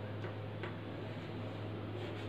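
Faint taps and light scratching of chalk on a chalkboard as an outline is drawn, over a steady low electrical hum.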